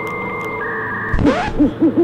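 Edited intro sound effects: a held electronic chord for about a second, then a quick run of short pitched hoots that rise and fall.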